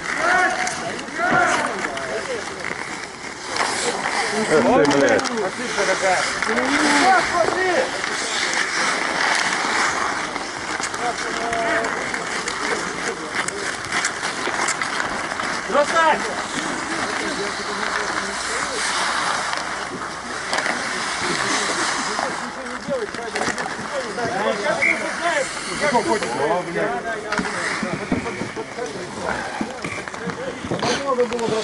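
Players shouting and calling to one another on an outdoor bandy rink, over the steady scrape of skates on ice and occasional sharp clacks of sticks and ball.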